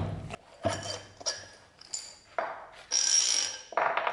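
Heavy cast-iron parts of an old bench vise being taken apart on a wooden workbench: a run of separate metal clunks and knocks as the movable jaw is slid out of the body, the loudest at the start. About three seconds in comes a longer scrape with a high metallic ring.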